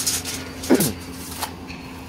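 Steel tape measure being let go and retracting, its blade hissing and rattling back into the case in two spells, stopping about a second and a half in. A brief voice sound falling in pitch cuts in just before the second spell.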